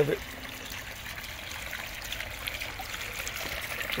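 Water trickling steadily from a tiered terracotta pot fountain. It spills from the top pot into the larger pot below and down onto river-stone gravel.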